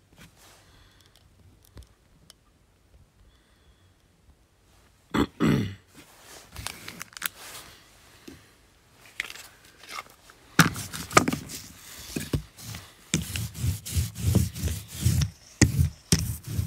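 Off-camera knocking and scraping from someone moving about and setting up, starting with one short, loud grunt-like sound about five seconds in and getting busier in the second half.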